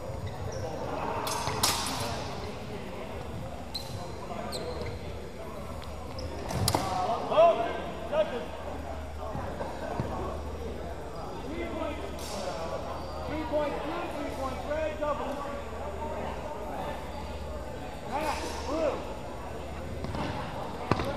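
People talking in an echoing gymnasium, with a few sharp knocks several seconds apart, the loudest about seven seconds in.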